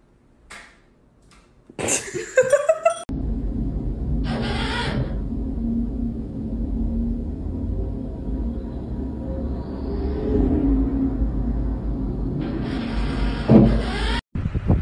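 Motorised lid of an automatic sensor trash can whirring for about a second, then again for about a second and a half near the end, over a steady low rumble.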